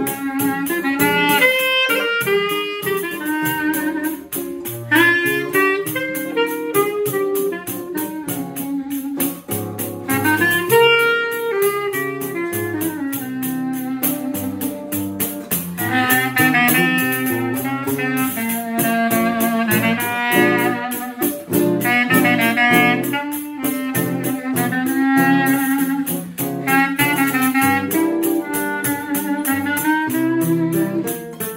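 Live choro trio: clarinet playing the melody over a seven-string acoustic guitar's moving bass lines and chords, with a pandeiro's jingles and skin keeping a quick, even beat.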